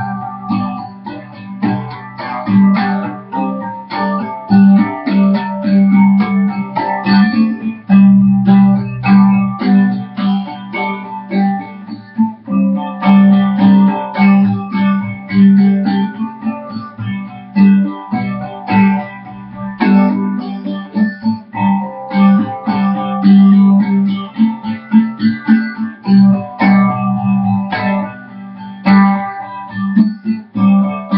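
Guitar playing an instrumental passage, chords struck again and again over a steady low note.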